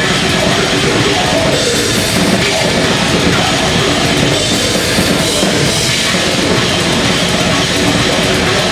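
Death metal band playing live at full volume: dense, rapid drumming from a close-miked kit under distorted guitars.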